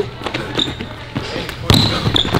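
Basketball dribbled on a hardwood gym floor: several bounces, the loudest near the end, with brief high sneaker squeaks on the hardwood.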